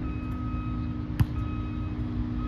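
A vehicle's reversing alarm beeping about once a second over a steady engine rumble, and one sharp slap about a second in, a hand striking a volleyball.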